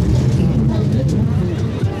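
Indistinct talking over a steady low rumble.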